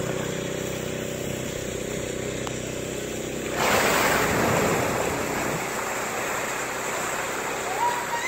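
A steady low motor hum, and then, about three and a half seconds in, a sudden loud rush of splashing water as a humpback whale lunges up through the surface. The splash slowly fades as the water swirls back.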